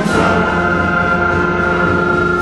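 Seventh-grade concert band of woodwinds and brass playing loud, sustained chords, with a new chord coming in right at the start.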